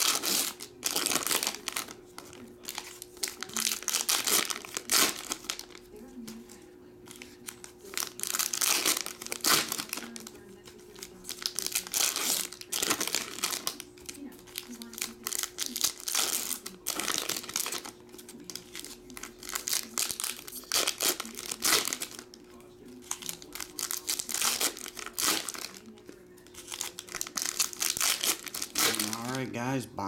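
Foil wrappers of trading-card packs crinkling in repeated short bursts as they are handled and opened.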